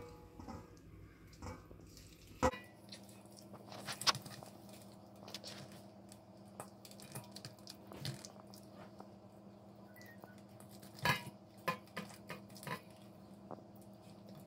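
Hands rubbing masala paste into whole sea bream in a stainless steel bowl: faint handling sounds with scattered clicks and taps as fingers and fish knock against the steel, the sharpest a couple of seconds in, about four seconds in and near eleven seconds. A faint steady hum runs underneath.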